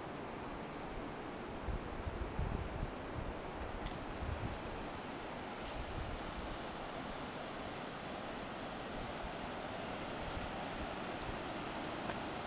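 Steady rushing outdoor noise of wind and distant flowing water. Wind buffets the microphone with low thumps from about two to five seconds in.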